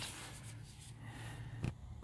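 Quiet background with a faint steady low hum, broken by a single short click about one and a half seconds in.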